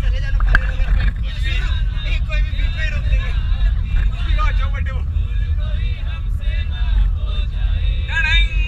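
Passengers talking over one another inside a bus, over the steady low rumble of the bus engine and road. A single sharp knock about half a second in.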